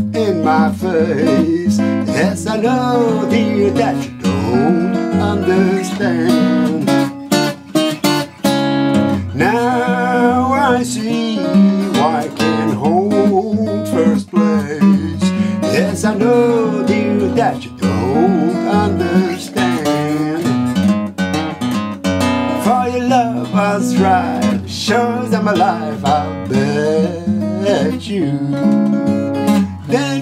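A 1986 Greven FX acoustic guitar fingerpicked in a swinging country-blues style in the key of A, capoed at the second fret, as a continuous instrumental passage.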